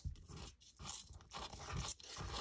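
Plastic squeeze bottle of glue pressed against paper under a piece of lace, its nozzle dabbing and scraping on the paper in faint, irregular scrapes and rustles, with a short click at the start.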